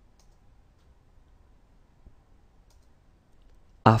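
Quiet room tone with a few faint, isolated clicks spread through the pause.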